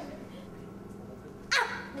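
A boy's short, high yelp ("ah!") with a falling pitch, about one and a half seconds in, after a quiet pause.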